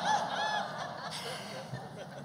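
Audience laughing in a large hall, many short high bursts of laughter dying away over about a second and a half.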